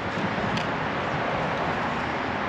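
Steady rushing outdoor background noise with no clear events, and one faint light tap about half a second in.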